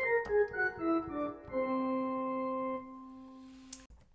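Electronic keyboard with an organ-like tone playing a whole-tone scale: a quick run coming down at about five notes a second, then a low note held for about a second that fades and cuts off. A click near the end.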